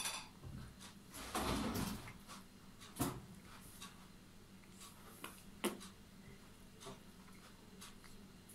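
Faint mouth sounds of a child chewing a Toffifee candy with his mouth closed. There is a short louder rustle about a second and a half in and a few small clicks later on.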